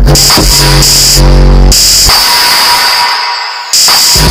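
Electronic music track: a synthesizer beat with drum machine and deep bass. About two seconds in the bass and drums drop out and a thinner passage fades down, then the full beat comes back just before the end.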